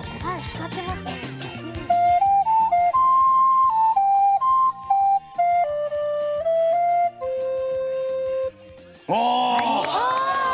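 Alto recorder playing a short melody of separate clear notes that step up and down, ending on a long held lower note. Voices come in near the end.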